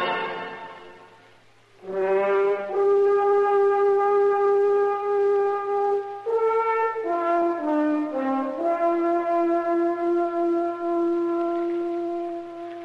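A preceding music passage fades out over the first second and a half. Then, about two seconds in, a solo brass instrument plays a slow melody of long held notes, with a short falling run in the middle before settling on a long low note. It is a music bridge in a 1950s radio drama.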